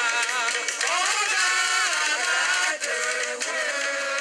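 A woman singing a slow gospel worship song into a microphone, with long held notes that glide up and down. The sound is thin, with no bass.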